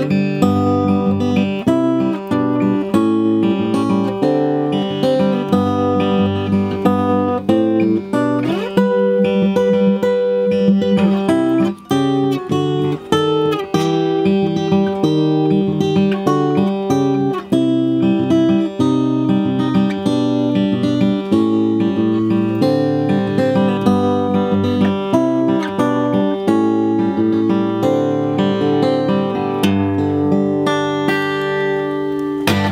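1961 Epiphone FT-79N Texan acoustic flat-top guitar (spruce top, mahogany back and sides) played fingerstyle, bass notes moving under plucked melody notes. A few notes slide in pitch about nine seconds in, and the playing breaks off for a moment about twelve seconds in.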